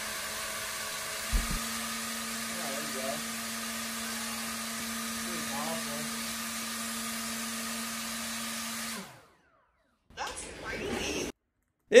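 A small electric motor spinning a 3D-printed flexible-filament propeller at speed: a steady whir with a low hum that sets in about a second in. It cuts off suddenly about nine seconds in, and a short burst of whirring follows about a second later.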